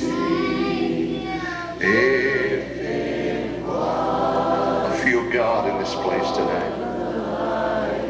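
Many voices singing a gospel chorus together in long held notes that glide up and down, over a steady low hum.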